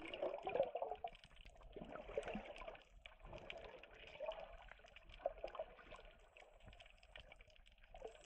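Faint, muffled water sound picked up with the microphone underwater: gentle sloshing with small scattered bubbling clicks.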